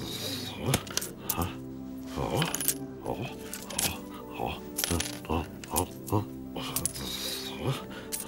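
Coins clinking one after another as they are set down and stacked on a counter, a dozen or so sharp clinks at uneven intervals, over background music.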